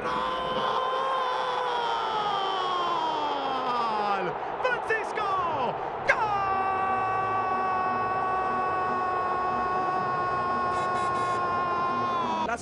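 Football commentator's drawn-out goal cries over stadium crowd noise: one long yell sliding down in pitch over the first four seconds, then, after a few quick words, a second cry held at a steady pitch for about six seconds.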